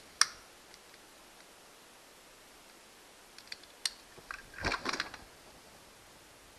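A single sharp click just after the start, then a few seconds later a short cluster of small clicks and rustling: small rod-repair parts and a glue stick being handled by hand.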